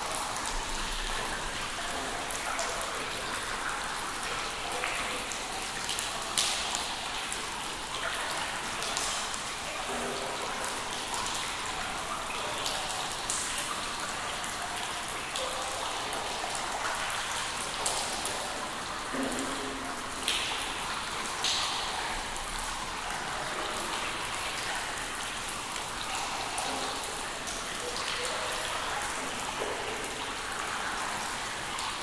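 Water drops falling and dripping into pools in a cave: a continuous patter of drips. A few louder drips stand out, some with a short ringing pitch.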